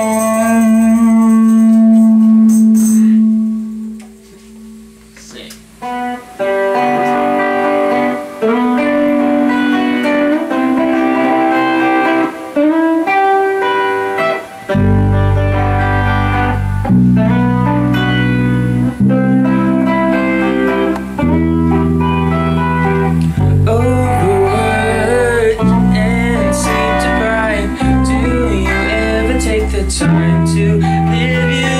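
A live band's final chord rings out and fades, and after a short pause an electric guitar starts picking a melodic riff of single notes. About halfway through, deep bass notes join in, each held for about two seconds before changing.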